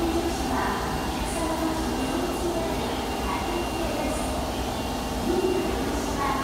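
Ambience of an underground metro platform with an Osaka Metro 22 series train standing at it: a steady hum from the stationary train, with passengers' voices and movement under it.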